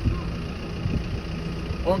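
A steady low engine hum, like an idling vehicle, runs under the pause. A man's voice starts again near the end.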